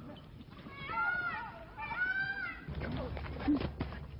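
Two high-pitched animal calls about a second apart, each rising then falling. From just under three seconds in they give way to a low rumble with a few scattered knocks.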